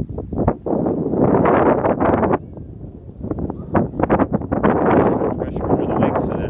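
Gusty wind blowing loudly on the microphone, easing for about a second midway and then picking up again.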